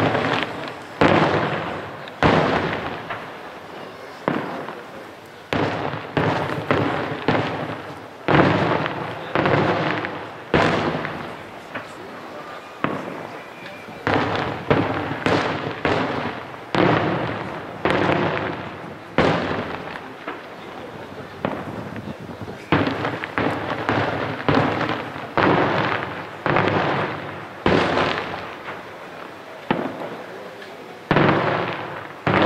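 Aerial fireworks shells bursting in quick, irregular succession, each a sharp bang with a rolling echo behind it, with two short lulls about a third and two-thirds of the way through.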